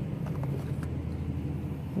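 A car engine idling with a steady low rumble, with a few faint taps of books being handled in the first second.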